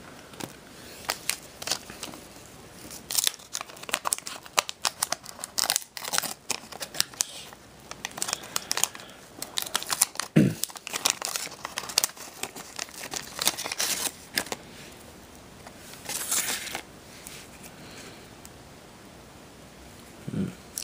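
Wax paper wrapper of a 1985 Garbage Pail Kids pack being torn open by hand, crinkling and tearing in a fast run of sharp crackles that dies down in the last few seconds.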